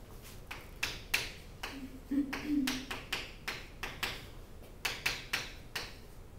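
Chalk tapping and scratching on a chalkboard as equations are written: a quick, irregular run of taps, with a brief low tone about two seconds in.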